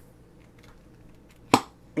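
Screw lid of a small glass jar of minced pork sauce twisted open: one sharp pop about one and a half seconds in as the lid breaks loose.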